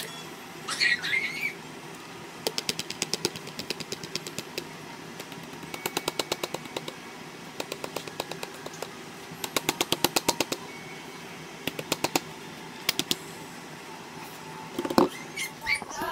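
Quick runs of sharp taps, about eight to ten a second, coming in short bursts with pauses between: a plastic container being knocked against a glass blender jar to shake its contents out. One louder knock follows near the end.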